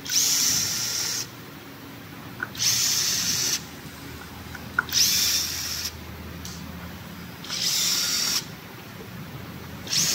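Cordless drill-driver running screws in an electric scooter's deck: four short runs of about a second each, a couple of seconds apart, as it moves from screw to screw.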